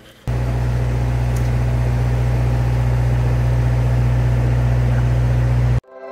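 A loud, steady low rumble that starts suddenly just after the start and cuts off abruptly near the end.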